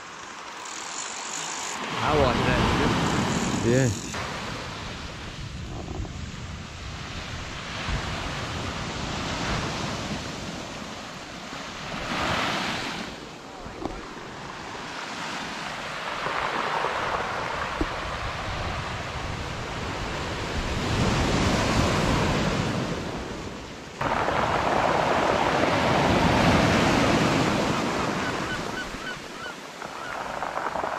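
Surf breaking on a beach, a rushing wash that swells and fades again every few seconds.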